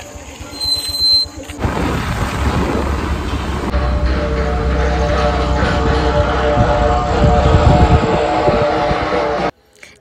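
Riding on a two-wheeler: a loud low rumble of wind on the microphone and motion noise, with music playing over it and holding steady tones. A brief high squeal about a second in, before the ride begins; the sound cuts off suddenly near the end.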